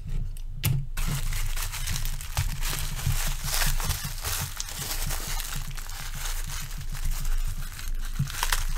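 Plastic bubble wrap crinkling and rustling as a small die-cast toy car is unwrapped by hand. A few light clicks come in the first second, then steady crackling.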